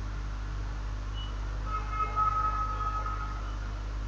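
Steady low electrical hum of background noise, with a faint pitched tone of several notes held for about a second and a half around the middle.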